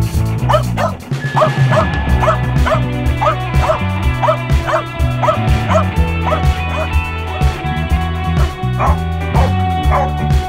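A puli rescue dog barking over and over in a steady run of about three barks a second. This is the sustained barking a search-and-rescue dog gives to indicate a find in the rubble. Background music plays underneath.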